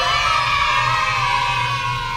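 A long, high-pitched cheering whoop, one held voice lasting about two and a half seconds and sagging slightly in pitch toward the end.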